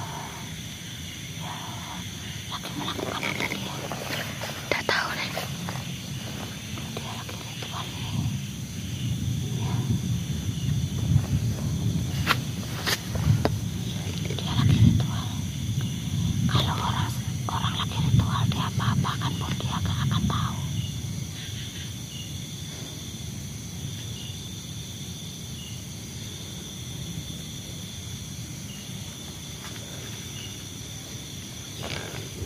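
Plant stems and palm fronds being hacked with a blade: irregular knocks and leaf rustling, busiest in the middle, over a steady high chirring of night insects.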